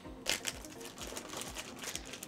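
Clear plastic bag crinkling and crackling in irregular bursts as hands handle the sealed pack of stickers.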